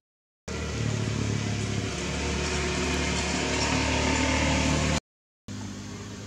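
A motor vehicle's engine running, with a steady low hum that grows slightly louder. It sits between two brief stretches of dead silence that sound like edit splices.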